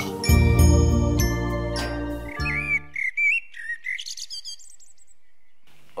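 Title theme music with bell-like chimes that fades out about halfway through, overlapped and followed by a run of bird chirps that die away shortly before the end.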